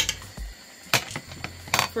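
Metal spoon clinking against the metal pot of cooked red kidney beans: three sharp clinks, at the start, about a second in and near the end, with a dull knock between the first two.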